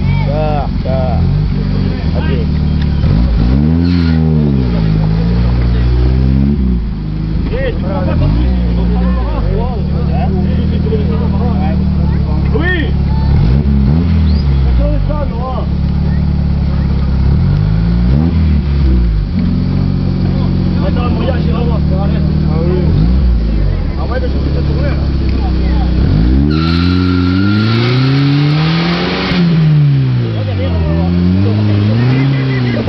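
Off-road Jeep's engine revving up and down again and again as it works its way through deep mud. Near the end there is a loud hiss with a steady whine for about three seconds.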